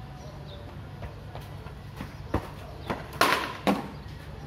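Sharp knocks from a wooden cricket bat and ball on a hard tiled floor: two lighter ones past the halfway mark, then two louder ones close together near the end.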